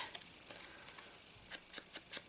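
Faint handling sounds of a foam ink blending tool and a cardstock strip: a soft rustle, then a few light taps near the end.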